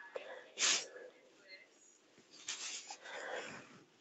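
A person's breathing close to the microphone: one short, sharp breath about half a second in, then softer breaths near the end.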